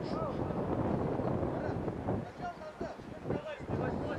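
Wind rumbling on the microphone of an open-air rugby pitch, with scattered distant shouts from players.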